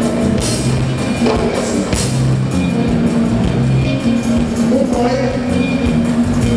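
Live Afrobeat band playing: a repeating bass line under a steady drum beat, with a voice singing near the end.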